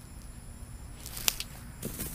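A cast net being thrown sidearm: a short swish about a second in, with one sharp click. A faint steady high insect drone runs underneath.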